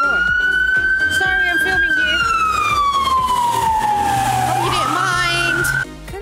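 Emergency vehicle siren wailing loudly, its pitch sweeping up quickly, then slowly rising and falling over a few seconds before sweeping up again. It cuts off suddenly just before the end.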